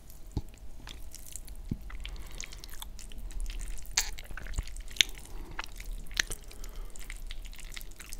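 Close-miked wet chewing of cheesy spaghetti bolognese, a steady run of sticky mouth clicks and pops, with a metal fork working through the pasta on the plate.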